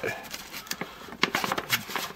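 The heat-sealed seam of a plastic MRE bag being peeled apart by hand. The seal resists and gives way in a run of quick crackling ticks over the rustle of the plastic.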